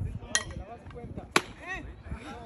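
Two sharp cracks of a baseball striking, about a second apart, the second the louder, with people's voices around the field.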